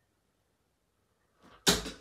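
A Loxley Sheriff 22 g steel-tip tungsten dart striking a bristle dartboard once, a sharp short impact about one and a half seconds in, with near silence before it.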